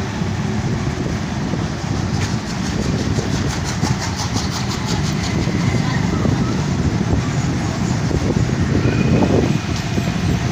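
Steady low rumble of a motor vehicle moving along a street. About two to five seconds in there is a rapid, even ticking rattle.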